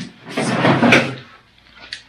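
A clattering of metal parts being handled and pushed together as the side-by-side's door is fitted against the new roll cage, lasting about a second, with a sharp knock near its end.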